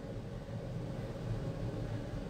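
Steady low hum under a faint, even hiss: background room noise, with no distinct event standing out.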